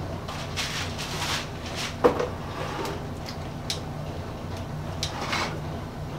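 Light knocks and handling sounds of a plastic paint bucket and brush being moved and set down on a workbench, with a sharper knock about two seconds in, over a steady low hum.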